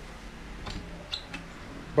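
A few faint clicks and taps as the wooden crib's side rail and its metal slide latch are handled.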